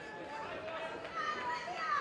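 Boxing crowd shouting and calling out, many voices overlapping, with one higher, louder shout near the end.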